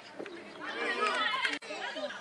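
Several people calling out and chattering indistinctly, loudest about a second in, with a sudden break just past midway where the clip is cut.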